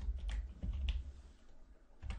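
Computer keyboard being typed on: about five quick keystrokes in the first second, over a steady low hum.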